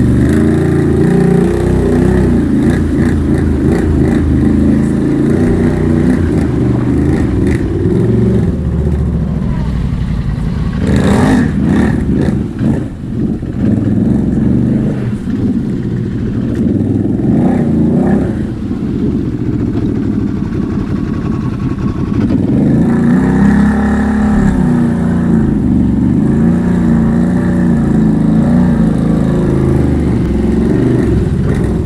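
Can-Am Renegade X mr 1000R's V-twin engine running under load and revving up and down as the ATV works through a flooded, muddy trail. It eases off for a few seconds a little past the middle, then picks up again.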